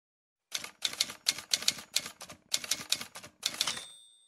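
Typewriter sound effect: rapid, uneven bursts of keystroke clicks starting about half a second in, ending near the end with a brief high ringing tone like a carriage bell.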